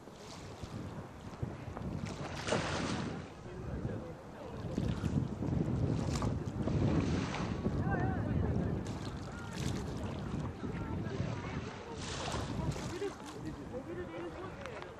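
Sea waves washing onto the beach in repeated surges, loudest around the middle, with wind buffeting the microphone.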